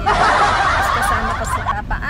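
Breathy snickering laughter, loud and dense for most of the two seconds, over the low rumble of the moving van.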